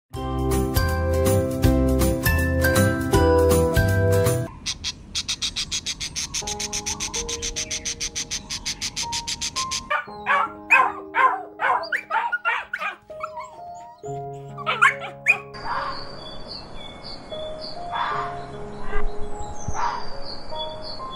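A loud music jingle for the first four or so seconds, then soft piano music under a string of animal sounds: a fast, even chattering of about eight pulses a second, a run of short loud calls from about ten seconds in, and high bird chirps near the end.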